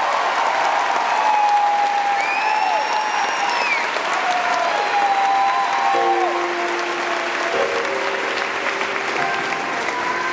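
A theatre audience applauding and cheering at the end of a song, with clapping and scattered shouts rising and falling in pitch over it.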